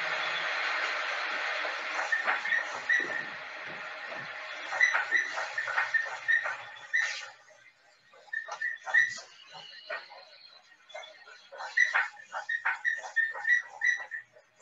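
Laboratory hydraulic actuators (load and boundary condition boxes) shaking a bridge-pier test specimen with an earthquake ground-motion record, heard through video-call audio. There is a steady rushing noise for about four seconds, then irregular clicks and short knocks.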